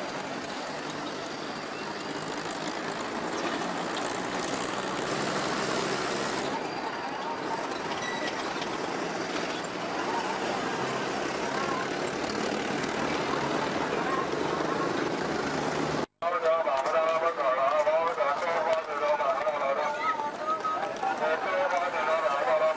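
Busy city street: passing motor traffic under a steady mixed hubbub of many people's voices. After a cut about 16 seconds in, a louder, closer babble of crowd voices.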